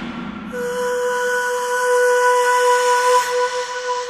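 Hardstyle track: a single steady electronic tone held from about half a second in, with a high hiss over it that fades away near the end.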